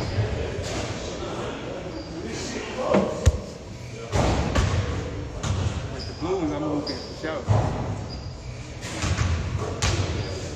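Indistinct voices echoing in a large gym hall, with scattered thuds of a basketball bouncing on the hardwood floor, one of them sharper about three seconds in.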